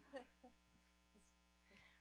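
Near silence: a steady low electrical mains hum from the microphone and PA system, with a brief faint voice sound about a quarter second in.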